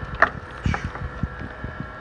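A utensil knocking and scraping against a stainless steel skillet as cooked rice is stirred and fluffed: a few sharp clicks, the first about a quarter second in, over a steady background hum.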